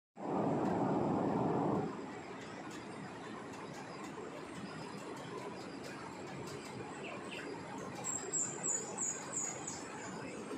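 Outdoor ambience with a steady background hiss, opening with a louder rush of noise that lasts about two seconds. Near the end a bird gives a quick run of about five high, falling chirps.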